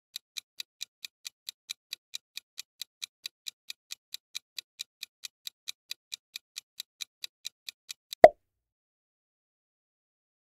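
Countdown timer sound effect: clock-like ticking, about four to five ticks a second, that stops a little after eight seconds in with one loud pop.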